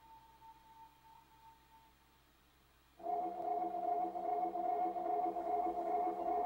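Music: a single held high note fading away, then a sustained chord of several steady notes coming in suddenly about halfway through.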